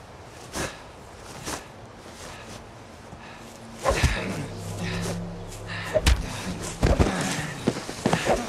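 Action-film fight sound design: two quick swishes in the first two seconds, then a low, sustained music score swells in about four seconds in. Sharp impact thuds land about six and seven seconds in.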